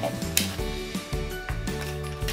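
Background music, with the crinkling of a small plastic wrapper being opened by hand and a sharp crackle about a third of a second in.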